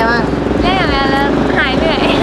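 A woman talking in Thai, over a steady low rumble of traffic.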